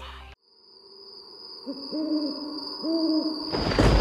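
The music stops right at the start, then an owl hoots twice over a faint steady high tone. Just before the end a loud low rumble comes in.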